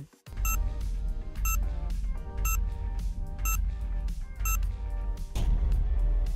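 Countdown timer music: a steady bass-heavy bed with a short high tick about once a second, five in all, marking a five-second answer countdown.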